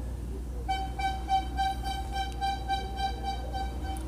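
A single held, high-pitched horn-like tone that starts under a second in and keeps going, over a steady low hum.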